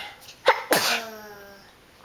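A sneeze: a sharp, sudden burst about half a second in, trailing into a short voiced vowel that fades away.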